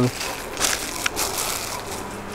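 Plastic garment packaging crinkling and rustling in irregular bursts as clothes are handled.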